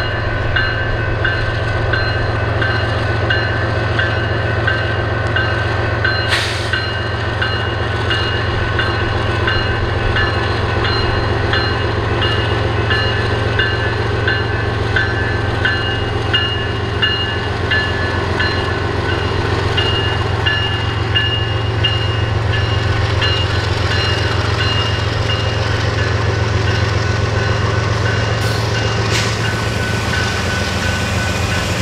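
BNSF diesel freight locomotives pulling away slowly from a stop and passing close by, their engines working under load in a loud, steady deep drone. A faint, regular high ticking or ringing runs along with it about twice a second.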